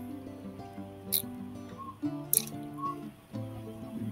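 Instrumental background music of held notes that change pitch. Two short, sharp clicks come about a second in and again near two and a half seconds.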